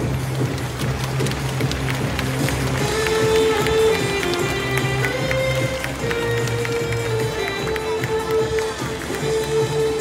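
Music playing, a melody of held notes over a bass line.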